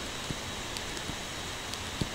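Steady low hiss with a few faint, short clicks of a stylus tapping on a tablet screen while writing.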